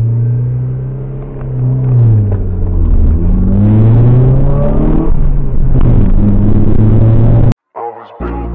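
EK Honda Civic hatchback engine accelerating, heard from inside the cabin: the revs climb, drop at a gear change and climb again twice. The sound cuts off abruptly near the end.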